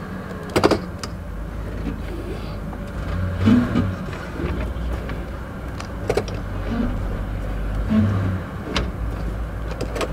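Ford 4.6L Triton V8 idling steadily in Park, heard from inside the cabin, still cold and warming up. A few sharp clicks and knocks, one about half a second in and others near six and nine seconds, break through the idle.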